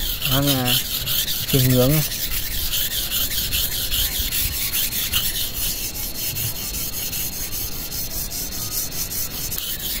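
A steel knife blade being stroked back and forth on a wet natural whetstone: repeated gritty scraping strokes as the stone cuts the steel.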